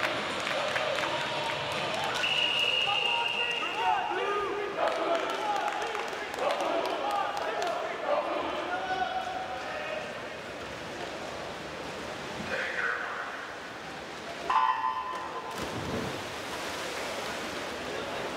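Swimming-meet crowd chatter echoing in a natatorium, with a long referee's whistle about two seconds in. The hall goes quieter, then the electronic start signal sounds about three-quarters of the way through and the race begins, the crowd noise rising after it.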